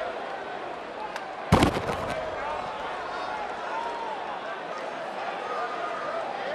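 A single sharp crack of a pitched baseball striking about one and a half seconds in, over steady ballpark crowd murmur.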